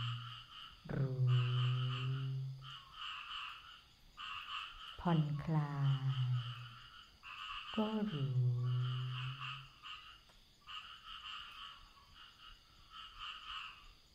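A chorus of frogs calling steadily in pulsing runs through the night air. Three short, slow spoken phrases of meditation guidance come about a second, five seconds and eight seconds in.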